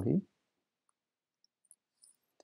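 A man's word trailing off at the very start, then near silence with a couple of faint, short computer clicks late on, as the file is saved and the cursor moves to the browser.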